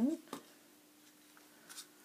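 Faint taps and light scraping from a wooden stir stick worked in a plastic cup of thick acrylic pouring paint, a few soft ticks against an otherwise quiet room.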